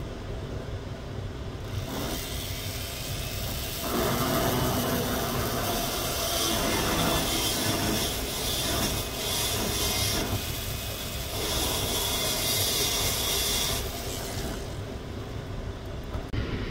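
Rotary carving handpiece with an inverted-cone bit grinding into wet fire agate. The grinding starts about two seconds in, grows louder about four seconds in as the bit cuts, and eases off near the end.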